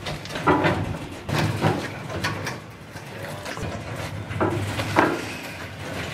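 Several men giving short shouts and effort calls as they heave a heavy roaster up onto a truck, with scattered knocks of metal between the calls.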